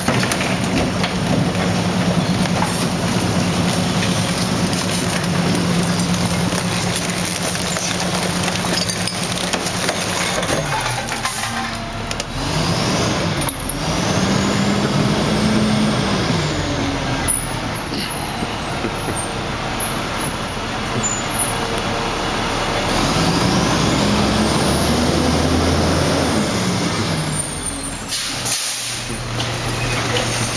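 Rear-loader garbage truck's diesel engine working its packer hydraulics: a steady raised engine note for about ten seconds, then the engine revs up and back down twice as the packer blade cycles, with a whine rising and falling alongside. A hiss of air-brake air comes in among it.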